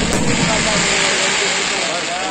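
Aerial firework shells bursting overhead in a dense, loud crackle and hiss that thins slightly near the end, with people's voices calling out underneath.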